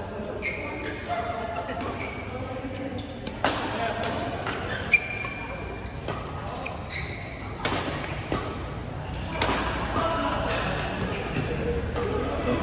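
Badminton rally: rackets striking a shuttlecock in sharp cracks every second or two, the loudest about five seconds in. Between hits, sports shoes give short squeaks on the court mat and players' voices are heard.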